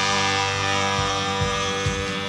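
Early-1960s rock band rehearsal recording: the band holds one sustained chord, with no singing during it.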